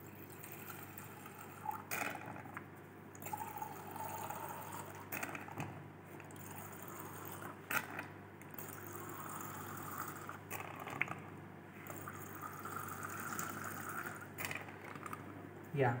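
Distilled water squirted from a squeezed plastic wash bottle into a glass beaker, filling it in a couple of long streams, with a few soft clicks from handling the bottle.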